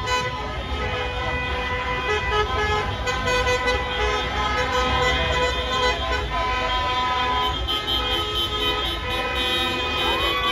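Car horns honking together, several held tones overlapping, over the rumble of a slow line of cars and the voices of a crowd.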